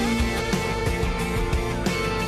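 Background music: an instrumental stretch of a song, with guitar.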